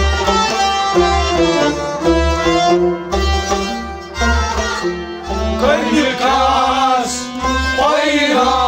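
Kashmiri folk music: a clay pot drum (nout) struck by hand in a steady rhythm under a stepped melody from an accompanying instrument. Men's voices begin singing about six seconds in.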